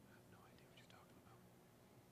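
Near silence: room tone with faint, low murmured voices.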